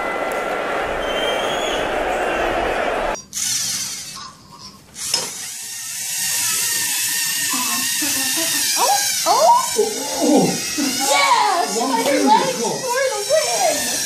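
A steady noisy sound for about the first three seconds. Then the small electric motors and plastic gears of LEGO Mindstorms robots whine as the robots push against each other. From about the middle on, excited voices of the onlookers rise over them.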